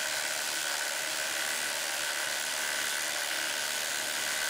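A Milwaukee M18 compact brushless and an M12 FUEL 1/4" hex impact driver running together under heavy load, hammering steadily as they drive stainless steel lag screws into treated 6x6 lumber with no pilot holes.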